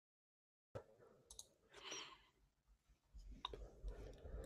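Near silence: room tone. Dead quiet at first, then a few faint, short clicks spread through the rest.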